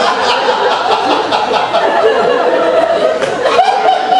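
Theatre audience laughing.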